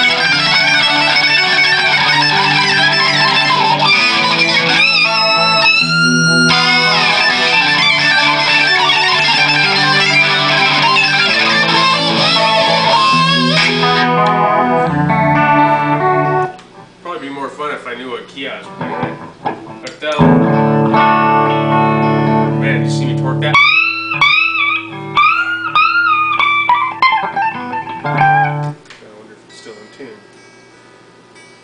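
2003 PRS Custom 22 Artist electric guitar with Dragon II pickups, played through an amplifier. A busy, loud run of notes lasts about fourteen seconds and then thins out and drops in level. From about twenty seconds in, low notes ring under string-bent notes above, and the playing stops shortly before the end.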